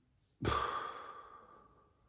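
A man sighs: one long breath out that starts about half a second in and fades away over a little more than a second.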